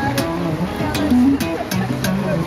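Electric bass guitar playing a funk line through a small amplifier: short low notes stepping up and down, with sharp clicks mixed in every fraction of a second.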